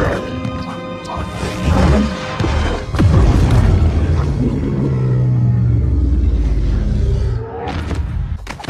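Film trailer score with heavy booming hits and cartoon fight impacts from punches and kicks. A big hit about three seconds in opens a loud sustained stretch that drops away near the end.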